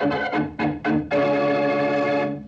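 Organ music bridge: a few short chords, then one long held chord starting about halfway through.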